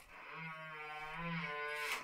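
Chris King rear hub's freehub buzzing as the bike's rear wheel spins freely: one steady, even buzz lasting nearly two seconds and growing slightly louder.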